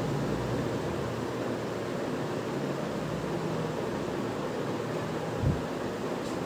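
Steady background hiss of room noise, with a short low thump about five and a half seconds in.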